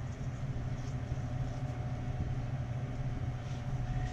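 Steady low hum with a faint, even hiss from the stovetop, where a lit gas burner is heating a pan of sliced onions in olive oil.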